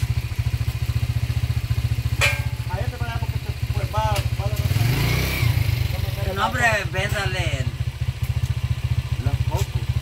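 An engine idling steadily, a low even pulsing rumble, which swells briefly about halfway through.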